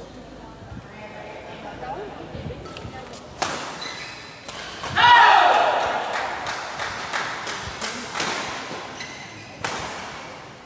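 Sharp racket strikes on a shuttlecock during a badminton rally, then, about five seconds in, a loud shout and cheering from players and spectators that fades away over several seconds, with a few more sharp hits.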